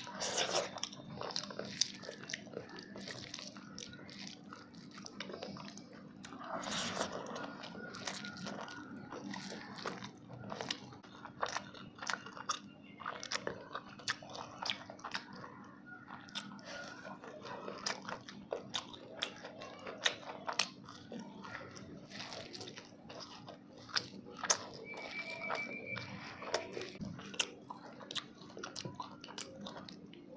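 Close-miked chewing and biting of fried fish and rice eaten by hand, with crunches and wet mouth clicks coming irregularly all the way through. A steady low hum runs underneath.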